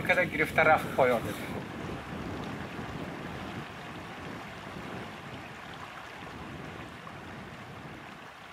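A man speaks briefly, then a steady rushing outdoor ambience of wind or moving air carries on alone, slowly fading.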